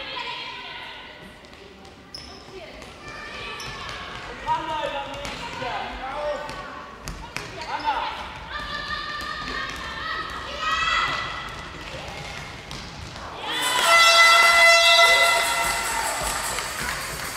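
A handball bouncing on a sports hall floor during play, with scattered knocks from the ball and running players and the voices of players and spectators calling out in an echoing hall. A long, loud high-pitched call near the end is the loudest sound.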